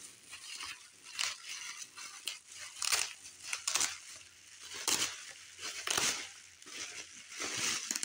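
Plastic bubble wrap crinkling and rustling as it is pulled open and handled, in irregular crackles, the loudest about three, five and six seconds in.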